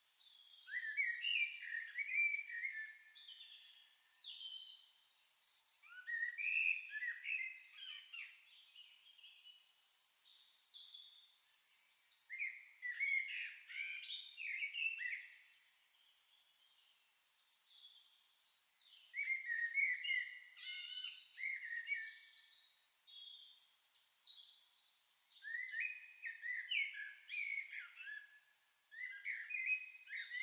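Songbird song in short, busy phrases of two to three seconds, repeating about every five to six seconds with quieter gaps between.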